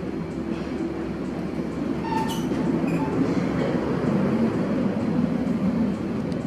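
Steady rumbling of a passing vehicle, growing slightly louder, with a few sharp clicks about two and three seconds in.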